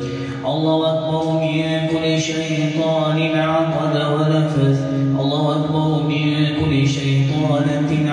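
A man reciting Quran verses for ruqyah in a slow, melodic chant. He holds long drawn-out notes and breaks only briefly between phrases.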